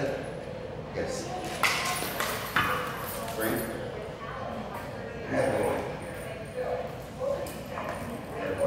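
Indistinct voices in a large tiled room, broken by two short, sharp taps about one and a half and two and a half seconds in.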